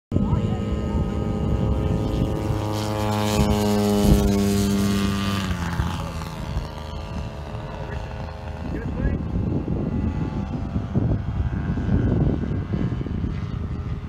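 Radio-controlled model warbird's engine and propeller running at high throttle on takeoff and climb-out, a steady note whose pitch drops about five to six seconds in as the plane goes past and away, then fainter.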